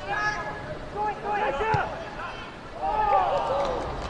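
Footballers' voices shouting and calling across the pitch, the words unclear, loudest about three seconds in. One short knock comes a little under halfway through.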